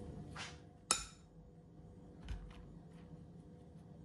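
A metal spoon knocks once against a bowl with a sharp clink about a second in, followed by a few faint ticks as biscuit crumbs are scooped out.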